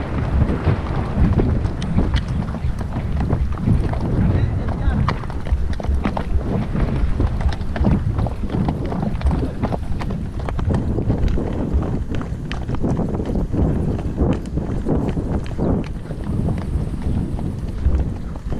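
Hoofbeats of horses moving along a dirt track, irregular knocks over a heavy low rumble of wind on the microphone.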